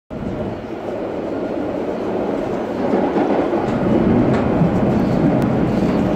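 Interior running noise of a London Underground Metropolitan line train: a steady rumble and hiss from wheels on rails, growing gradually louder, with a few faint clicks partway through.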